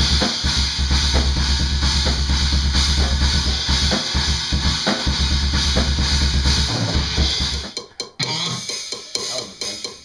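Rock drum kit played hard: rapid bass-drum strokes under crashing cymbals and snare. It stops about eight seconds in, giving way to quieter, scattered sounds.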